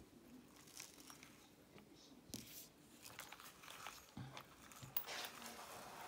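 Near silence with faint handling noise: a few soft clicks and a brief rustle near the end, as a radio-controlled nitro buggy chassis is moved about in the hand.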